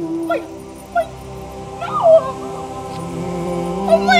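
A woman's excited high-pitched squeals of delight, a few short rising-and-falling cries, over sustained background music.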